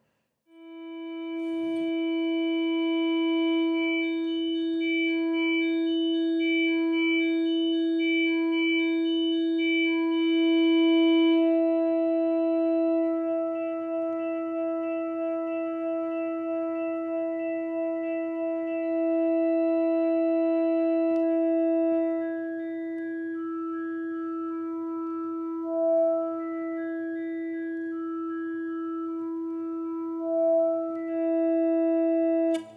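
A single acoustic guitar string held in endless sustain by the Vo-96 acoustic synthesizer, its pitch unchanging. The arpeggio modulator steps the string's overtones on and off in a repeating pattern over the held note. The pattern shifts about a third of the way in and again about two-thirds in.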